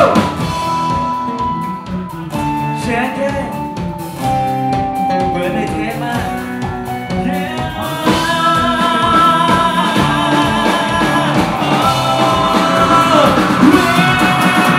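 A live rock band playing: sung vocals over drums, electric bass and acoustic guitar. The band gets louder about eight seconds in.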